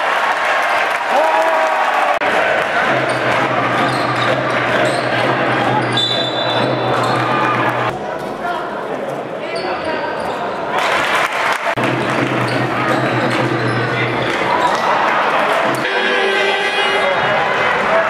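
Live sound of an indoor basketball game: the ball bouncing on a hardwood court under a steady din of crowd voices in a large hall, with a few short high squeaks.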